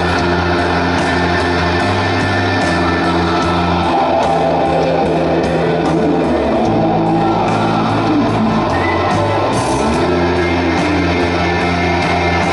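Live rock band playing loud and steady: electric guitar over held bass-guitar notes and drums, with no singing. Pitches slide up and down about halfway through.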